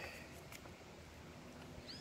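Quiet, with a faint paper rustle and a couple of light ticks as a picture book's page is turned.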